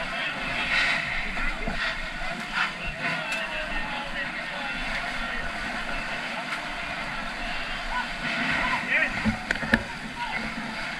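Steady engine drone and rush of fire apparatus pumping water through charged hose lines, with firefighters' voices calling out over it and a few sharp knocks near the end.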